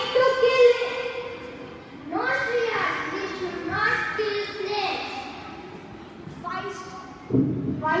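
Children's voices speaking through stage microphones in a large hall, in several drawn-out phrases with short pauses between them.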